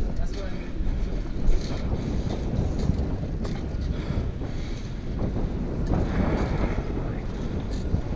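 Wind noise on the camera microphone over the low rumble of a BMX bike rolling on its rear wheel alone in a wheelie across asphalt, with a sharp knock about a second and a half in.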